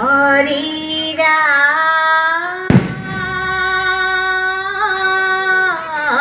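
Women's group singing Assamese ayati naam, a devotional chant, in long held notes that rise at the start and dip near the end. There is one sharp thump just under three seconds in.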